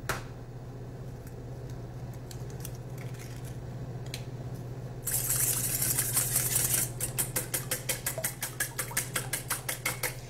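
Wire whisk beating milk and egg in a stainless steel bowl. After a few faint clicks, about halfway through it starts as a continuous rush, then becomes quick, even strokes of the wires against the bowl, several a second.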